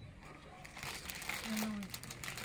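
Plastic Oreo cookie packet crinkling as it is handled, starting about a second in.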